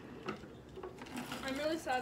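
A person's voice murmuring quietly in the background, growing into speech near the end, with a few faint light taps early on.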